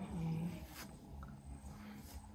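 A woman's low groan in the first half second, trailing off into a faint low hum, as her hair is pulled while being combed.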